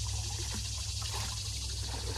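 Kayak paddle strokes lapping faintly in the water over a steady low outdoor rumble.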